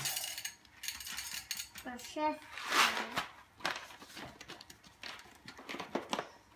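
Paper bag of coffee beans crinkling and rustling as it is handled and opened, with a few light knocks and clinks.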